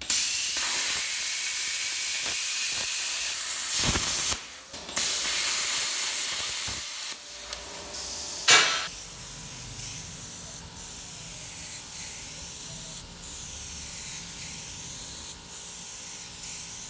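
Plasma cutter torch hissing as it cuts steel, with a short break about four seconds in and a sharp pop about eight and a half seconds in. After that a quieter steady hiss of compressed air, as from an air spray gun, continues.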